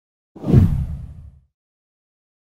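Whoosh sound effect from an animated video intro: one deep swoosh that swells about a third of a second in and fades away within about a second.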